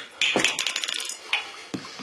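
Glass tumbler and ice cubes clinking as a drink of spirit is made up: a quick run of sharp clinks near the start, then two single clinks.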